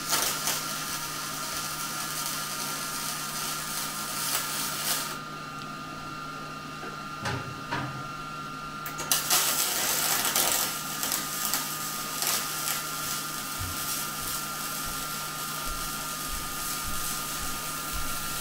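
MIG welding arc on aluminium from a Millermatic 211, a steady crackling buzz. One bead runs about five seconds, the arc stops for about four seconds, then a second longer bead runs almost to the end.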